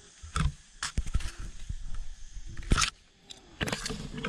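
Irregular knocks, scrapes and rustles of tree branches, bark and leaves against the camera and the climber's hands as someone clambers through a fruit tree's branches.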